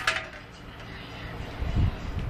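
Steady low hum of a bank of air-conditioner condenser units running, opening with the ringing tail of a sharp clink, with a few dull low thumps near the end.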